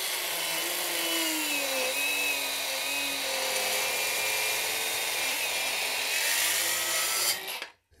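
Milwaukee M12 Fuel brushless circular saw with a 36-tooth finish blade making a full-depth cut through hard maple. The motor runs loaded in the cut on an XC 4.0 battery; its pitch sinks as the blade bites in during the first two seconds, holds steady, rises slightly near the end, then cuts off.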